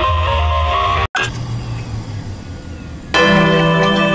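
Spliced edit of musical sound clips: a loud clip of dense sustained tones cuts off abruptly about a second in, followed by a quieter ringing stretch. About three seconds in, a loud sustained chord of steady tones starts.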